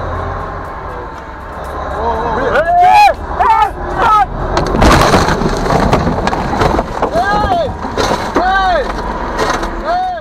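A mining haul truck crushing the cab of a small vehicle: crunching metal and breaking windscreen glass, densest about five seconds in, over a low engine rumble. A person inside cries out again and again in short, rising-then-falling yells.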